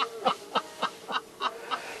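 Women laughing heartily: a run of short rhythmic laughs, about three a second, that gradually weakens.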